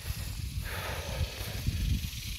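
Gusty wind buffeting the microphone in an uneven low rumble, with a brief rush of rustling leaves from about half a second in to past the middle.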